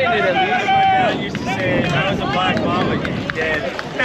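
Several men's voices shouting and calling out over one another on a softball field, some calls held long, with no clear words.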